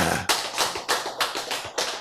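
A quick, even run of sharp taps, about six a second.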